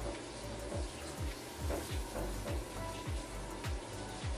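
Background music with a beat of deep falling bass notes, about two a second, over a steady low hum from a running washing machine and dryer.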